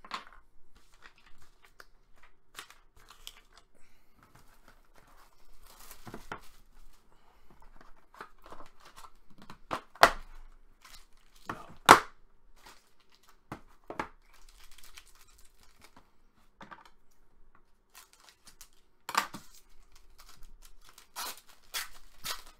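A shrink-wrapped trading-card box being torn open and unpacked, then a foil card pack ripped open near the end: scattered tearing, crinkling and handling noises, with two sharp, loud rips about ten and twelve seconds in.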